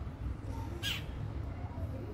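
A single short bird call just under a second in, over a steady low rumble.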